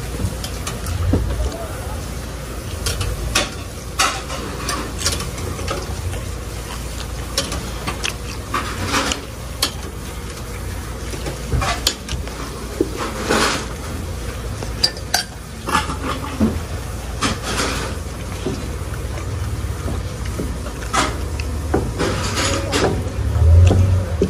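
Metal cooking utensils at a street-food stall: tongs and spatulas clinking against a steel wire rack and pans, a dozen or so scattered clicks over a steady low hum.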